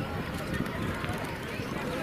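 Indistinct chatter of a crowd of students outdoors, many voices overlapping with no single clear speaker.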